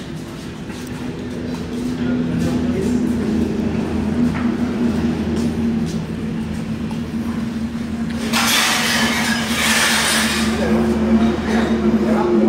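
A steady low mechanical hum with a constant tone runs throughout, and a loud hiss of about two seconds bursts in a little over eight seconds in.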